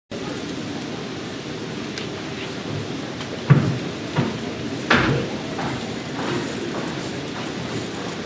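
Low murmur of an audience in a large hall, with three sharp knocks in the middle.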